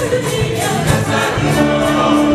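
Catholic church choir singing with a live band, drums playing under the voices.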